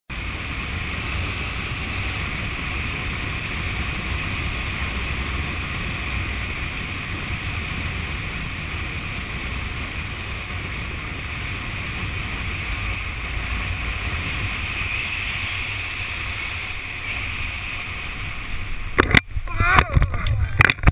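Steady wind rushing over a helmet-camera microphone during a parachute canopy descent. About a second before the end it breaks into irregular loud buffeting and knocks as the skydiver swoops in and touches down on grass.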